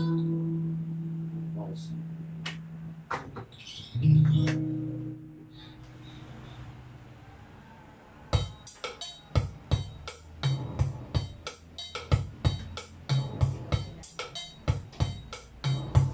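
Guitar chords strummed and left to ring out, a second chord about four seconds in. A little past halfway a backing beat with low bass notes starts and keeps a quick, steady rhythm.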